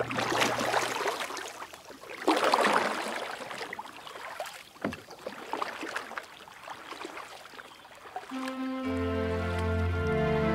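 Water lapping in irregular swells. Soft, slow music begins about eight seconds in.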